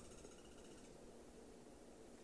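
Near silence: faint room tone during a pause in speech.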